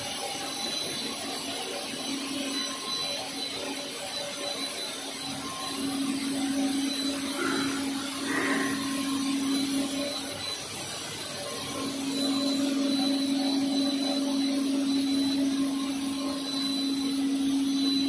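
HDPE pipe extrusion line running: steady machinery noise with a low motor hum that grows louder about six seconds in, breaks off for about a second just past the middle, then returns.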